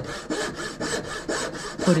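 Turning saw, a wooden-framed bow saw with a thin blade set to cut on the push stroke, sawing through wood in a quick, even rhythm of rasping strokes, several a second.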